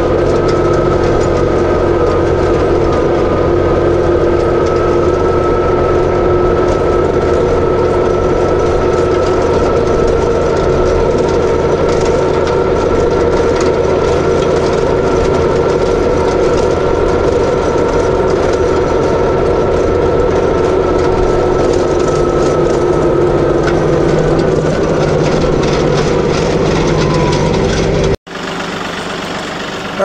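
Tractor engine running steadily under load as it pulls a landscape rake across rough pasture. The sound cuts off suddenly near the end, leaving a much quieter background.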